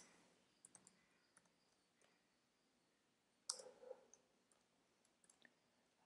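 Faint, scattered computer keyboard keystrokes over near silence: a few light clicks about a second in and a louder short clatter about three and a half seconds in.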